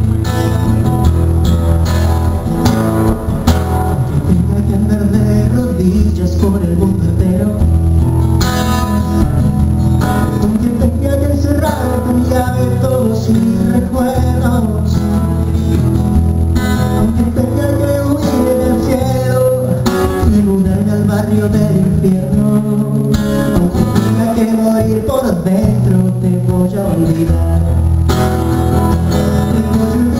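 Acoustic guitar strummed steadily, with a man singing a pop ballad over it.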